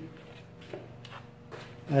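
Quiet pause in speech: faint steady hum of room tone with one small tick about three quarters of a second in; a man's voice starts again at the very end.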